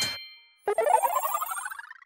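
A rapid run of bell-like chime notes climbing steadily in pitch, starting about two-thirds of a second in and fading toward the end: an end-card jingle sound effect.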